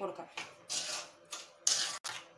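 A steel spoon scraping and stirring grated carrot and sugar in a metal kadai, in several short strokes, the loudest near the end.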